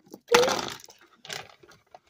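A sharp crack of something brittle being broken apart by hand, fading over about half a second, then a fainter crackle.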